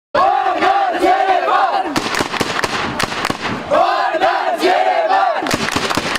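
Football supporters chanting together in two loud bursts, over a fast run of sharp beats.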